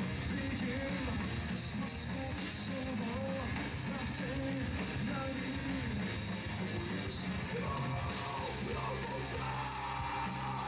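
Metal-rock band playing live at a steady loud level: electric guitars and drums, with a singer's vocal line over them.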